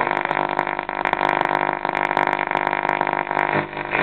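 Vintage wooden tabletop radio being tuned between stations: a steady buzzing drone of interference and static with several held tones from its speaker, dipping briefly near the end as a talk station comes in.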